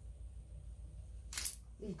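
A tarot card pulled from the deck with one short, crisp snap about one and a half seconds in, over a low steady hum; a woman starts to speak right at the end.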